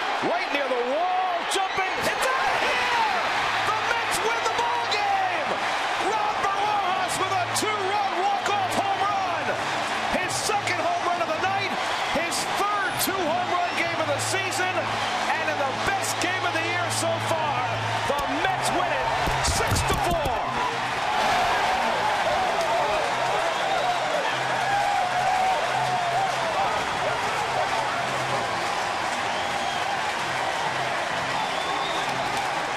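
Baseball stadium crowd cheering and shouting without a break for a game-winning walk-off home run, a loud mass of voices with sharp claps and whistles. Music plays underneath with a steady low note, and a few heavy thumps come about two-thirds of the way through.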